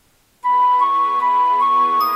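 An instrumental backing track starts abruptly about half a second in: a flute-like lead melody stepping back and forth between two close notes over sustained chords.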